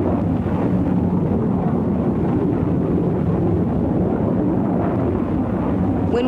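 Jet aircraft engine noise: a steady low rumble with a faint drone underneath.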